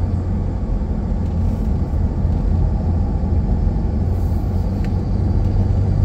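A car's cabin road noise while driving on a paved highway: a steady, low rumble of tyres and engine with no changes in pace.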